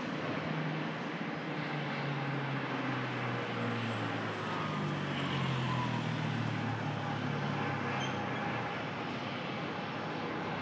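City street traffic, with the engine of a nearby road vehicle humming low, strongest about halfway through and fading out near the end.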